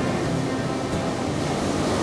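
Large ocean waves breaking: a steady wash of heavy surf, with music playing faintly underneath.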